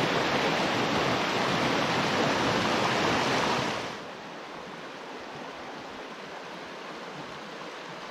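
Forest stream rushing over rocks and small cascades, a steady loud flow that drops suddenly about four seconds in to a softer, gentler flow.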